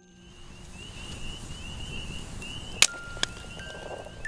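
A campfire crackling, with a high chirping repeated steadily over it. A sharp pop about three seconds in is the loudest sound, followed by a smaller one.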